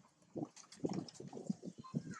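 Adult female long-tailed macaque giving a rapid string of short, low grunts, starting about half a second in: a threat warning at the juvenile grabbing at her baby.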